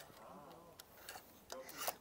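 Faint rubbing and scraping of clothes hangers sliding along a metal clothes rail as garments are leafed through, with a few light clicks towards the end.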